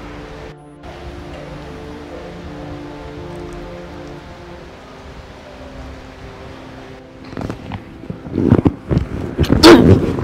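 Soft background film score with sustained tones. About seven seconds in, it gives way to a scuffle: loud, irregular bursts of noise and cries as two people grapple.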